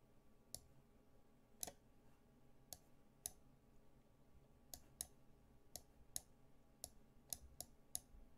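About a dozen quiet, sharp clicks at irregular intervals, bunching closer together in the second half, as moves are made in a fast online chess game.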